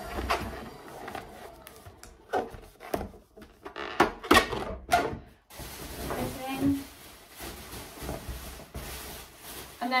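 Large plastic bag rustling and crinkling as an inflated rubber balloon is pushed into it and rubs against the plastic, with a run of sharp crackles and knocks for a few seconds in the middle.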